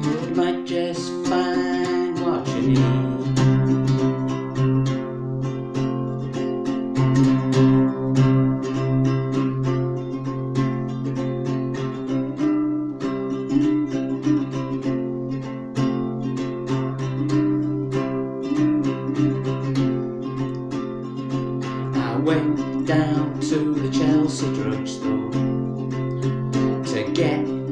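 Nylon-string acoustic guitar in open G tuning, capoed, strummed steadily in a rhythmic chord pattern through an instrumental passage between verses.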